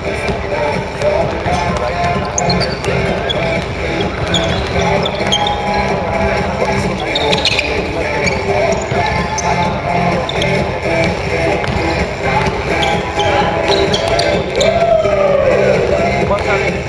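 Music playing over a basketball game in a gym: a ball bouncing on the wooden court, short squeaks from sneakers, and players' voices.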